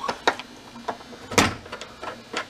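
A few sharp metallic clicks and knocks of a screwdriver working at the stainless steel inner panel of a dishwasher door. The loudest knock comes about a second and a half in.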